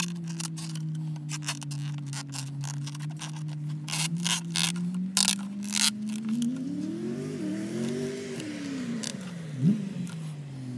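Clicks and scrapes from plastic intake parts being handled: a rubber breather tube being worked into a plastic airbox lid. They sound over a steady low humming drone whose pitch rises and falls in the last few seconds.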